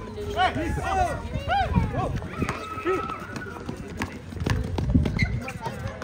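Outdoor basketball game in play: players shouting short calls to each other over running footsteps and thuds of the ball on the hard court.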